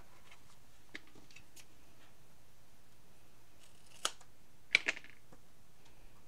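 Scissors snipping and trimming the seam allowance of a sewn vinyl dart to reduce bulk: a few faint clicks, then several sharp snips about four to five seconds in.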